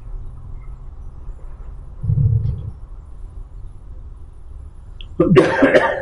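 A person coughing loudly near the end, after a shorter, softer low vocal sound about two seconds in, over a low steady hum.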